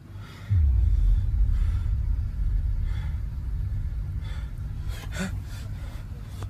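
A low rumble sets in about half a second in and slowly fades, with a few faint breathy sounds near the end.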